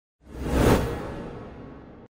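Intro transition sound effect: a single whoosh with a deep low hit that swells in quickly about a quarter second in, peaks, then fades away over about a second and a half before cutting off.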